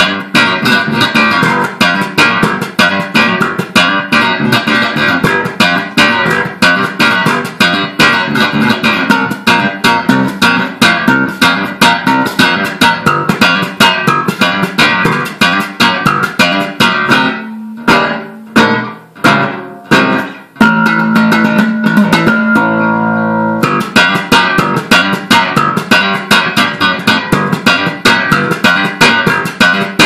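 Solo electric bass guitar played in a fast, steady run of plucked notes. A little past halfway it thins to a few separate ringing notes and one held note, then the quick plucking picks up again for the rest.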